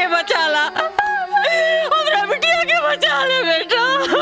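Background song: a high singing voice carrying a wavering, ornamented melody over a steady held drone.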